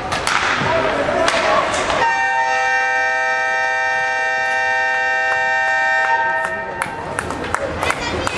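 Ice rink's electric horn sounding one steady, many-toned blast of about four seconds, starting about two seconds in. Around it is echoing rink noise: voices, and sharp knocks of sticks and puck on the ice.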